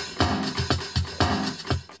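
A programmed beat played on an Akai MPC drum machine: a steady pattern of drum hits, about four a second, with a low kick under it.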